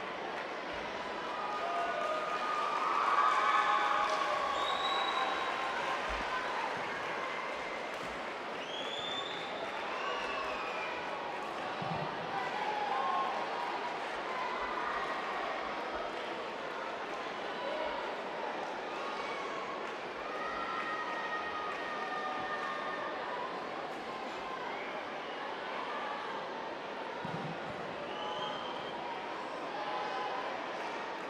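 Indistinct chatter of many voices in a sports arena, talking over one another, with a swell in loudness about three seconds in.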